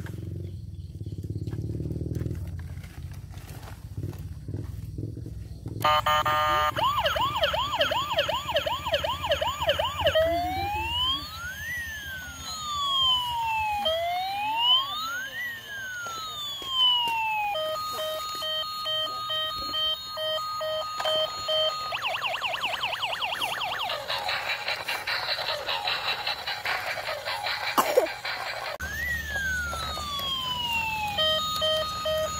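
Toy police van's electronic siren sound chip, starting about six seconds in and cycling through its patterns. First a fast yelp, then slow rising and falling wails, then a pulsed beeping tone, then fast yelping again.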